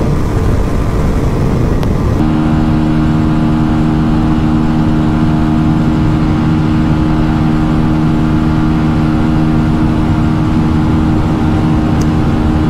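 Wind rushing over the camera mic at highway speed. About two seconds in, a Honda Shine 125's single-cylinder engine comes in, running flat out in top gear at a steady, unchanging pitch with wind noise underneath.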